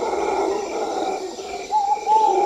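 Night-forest sound effects of wild animal calls, with a faint chirp repeating a few times a second and a long, steady, howl-like call starting near the end.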